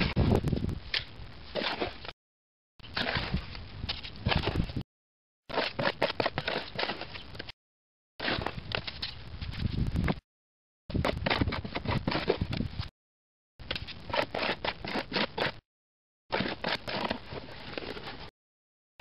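Hand trowel scooping and scraping wet concrete mix in a plastic tub and dropping it into a plastic bowl, a gritty crunching scrape with many small clicks. The sound is cut by short gaps of dead silence every two to three seconds.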